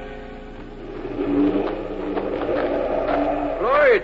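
Radio-drama wind sound effect building up as an orchestral music bridge fades out, ending in a whistling gust that rises and falls in pitch. It signals a storm coming on.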